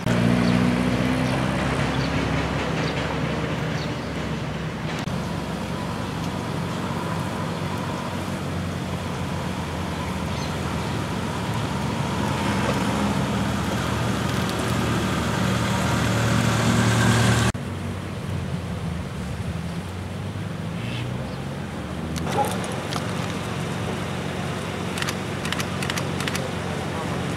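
A motor vehicle engine running steadily with a low hum. It cuts off abruptly about two-thirds of the way through, leaving a quieter background of outdoor traffic noise.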